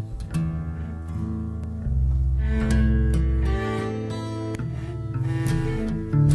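Acoustic guitar strumming chords, changing every second or two, with deep bass notes underneath.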